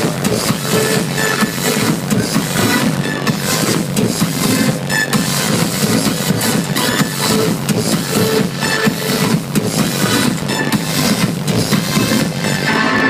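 Electronic dance music from a live DJ set, played loud over a club sound system and recorded from within the crowd on a phone.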